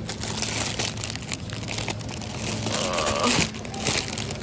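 Crinkling and rustling of plastic-wrapped zucchini packs being handled and shifted in a cardboard produce box, over a low steady hum.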